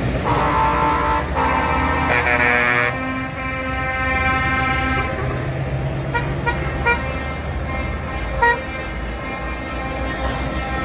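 Truck air horns sounding over the rumble of passing diesel trucks: a long blast, then a louder chord of several horn notes, more held horn tones, and a few short toots later on.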